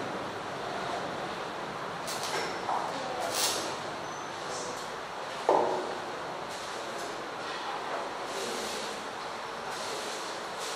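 Steady hiss of hall room noise, with a few light rustles and one short sharp knock about halfway through.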